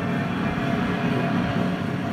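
Douglas DC-3 Dakota's twin piston engines running in flight, a steady low drone.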